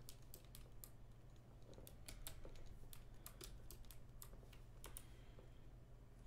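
Faint, irregular clicking of computer keys being pressed, over a steady low hum.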